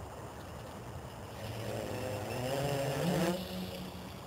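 Homemade quadcopter's four Turnigy 2205 brushless motors spinning 8-inch props with a buzzing whir. The pitch climbs and the sound grows louder as the throttle rises, peaking about three seconds in and then dropping back.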